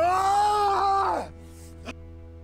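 A person's long, loud wailing cry, held for about a second with the pitch rising at the start and dropping away at the end, over low bowed-string music; a short, sharp sound follows near the end.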